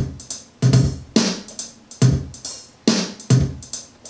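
Programmed MIDI drum beat playing back with an aggressive eighth-note swing groove applied, so the hits fall off the straight grid in an uneven, lilting pattern.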